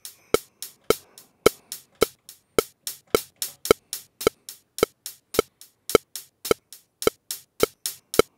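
Sliced hi-hat samples on Impact drum pads, tapped in by hand between the strokes of a steady click track at about two clicks a second (107 BPM), as a hi-hat part is recorded live before quantizing. The evenly spaced clicks are the louder strokes, and the hand-played hits land less evenly between them.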